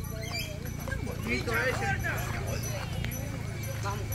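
Faint voices of people talking in the background over a steady low hum.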